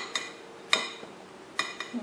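Metal spoon clinking against a ceramic bowl several times, each clink briefly ringing, as sliced strawberries are scooped out.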